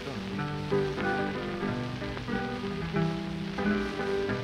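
Acoustic blues guitar playing an instrumental run of plucked notes between sung verses, on an old 78 rpm shellac record, with the record's steady surface hiss and crackle underneath.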